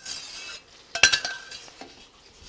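Tableware clinking: one sharp clink about a second in rings briefly, with lighter knocks of dishes being handled around it.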